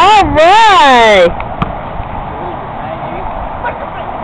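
A loud shout close to the microphone, just over a second long, its pitch wavering and then sliding down; it is clipped. After it there is a low outdoor background with a couple of faint knocks.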